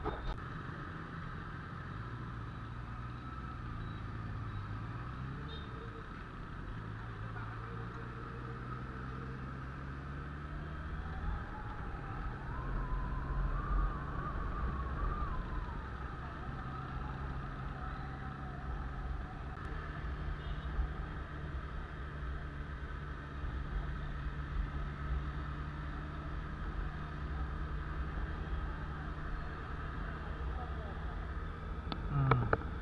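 Motorcycle engine running at low city speed under a steady rumble of wind and road noise, its pitch shifting a little as the rider changes speed.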